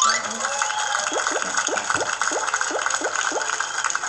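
Celebration sound effect from a story-puzzle game app on completing the puzzle: a rising whoosh into a steady fizzing hiss, with a quick run of short rising chirps, about five a second, in the middle.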